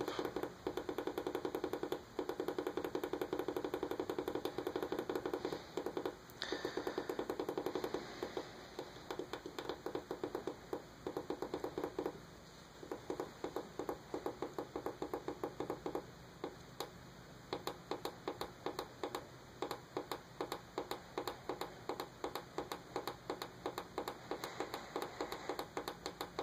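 A small tactile push button clicked over and over, fast at first and then a few clicks a second with a short pause midway; each press steps up the simulated vehicle speed fed to a DIY Arduino transmission controller.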